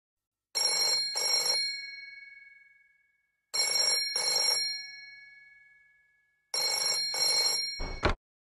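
Desk telephone ringing with a double ring, three times about three seconds apart, each ring leaving a fading bell tone. The third ring is cut off at the end.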